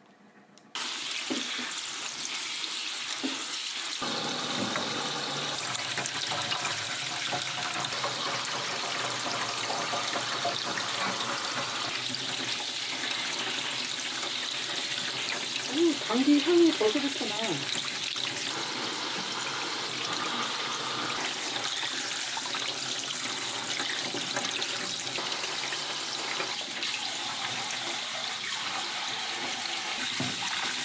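Kitchen faucet running steadily into a stainless-steel sink while leafy vegetables and chili peppers are rinsed by hand in a metal bowl under the stream. The water starts about a second in. About halfway through, a short voice-like sound rises briefly above the water.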